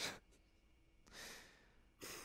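A single faint breath about a second in; otherwise near silence.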